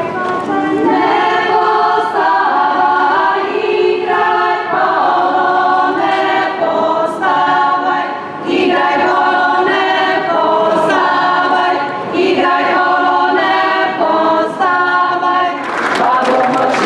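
A folk ensemble singing a traditional song together in several voices, unaccompanied, in phrases broken by short pauses.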